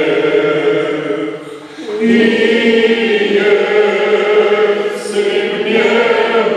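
Men's voices singing a church hymn together, one voice led through a microphone: long held notes, with a short break for breath about one and a half seconds in before the next phrase begins.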